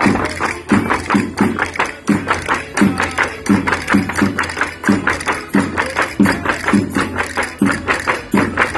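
Portuguese folk music playing a vira from the Minho, a quick dance tune with a steady beat of sharp percussion strikes at about three a second.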